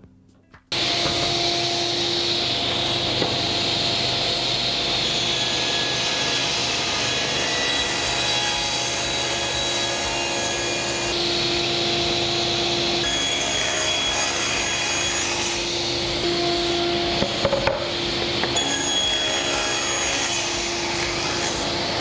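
Sliding table saw running and cutting solid wood panels to size: a steady saw noise with a held tone, starting about a second in, its pitch shifting slightly at a few points.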